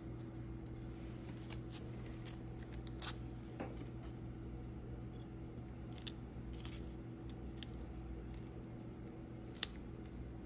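Light, scattered clicks and taps from small pieces of glitter cardstock being handled and pressed down by hand, over a steady low hum. The sharpest clicks come about three seconds in and again near the end.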